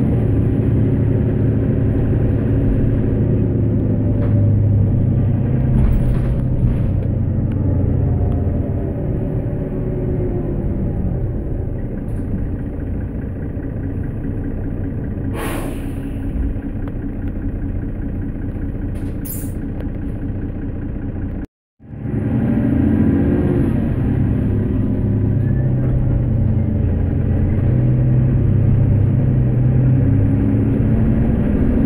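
Mercedes-Benz Citaro bus's OM457LA diesel engine running under way, heard from inside the cabin, its pitch rising and falling as the bus pulls away and changes speed. A couple of short hissing sounds come near the middle, and the sound cuts out for a moment about two-thirds through.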